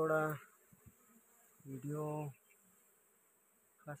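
Honey bees buzzing faintly around an exposed wild honeycomb. A man's voice breaks in briefly three times and is louder than the buzzing.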